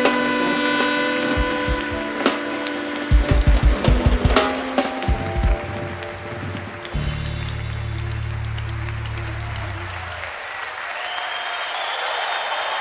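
Live jazz-funk band ending a tune: a run of drum-kit hits, then a held low final note that dies away about ten seconds in. Audience applause rises near the end.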